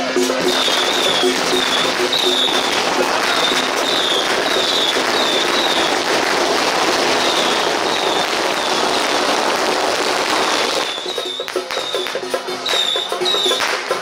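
A string of firecrackers crackling densely and without a break for about eleven seconds, then stopping.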